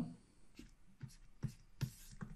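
Faint, brief taps and scratches of a stylus writing on a tablet surface, a few short strokes about half a second apart.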